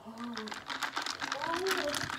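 A rapid run of small, sharp clicks and ticks, with a faint, wordless voice rising and falling underneath.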